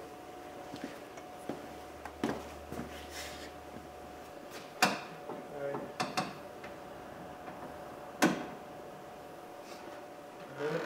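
Plastic interior door trim panel of a Dodge Ram pickup being handled and fitted against the door: a handful of scattered sharp clicks and knocks over a faint steady hum.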